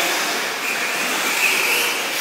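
1/10-scale 4WD short course RC trucks racing on an indoor dirt track: a steady hiss of tyres and motors, with a higher electric-motor whine coming up about halfway through as one truck comes close.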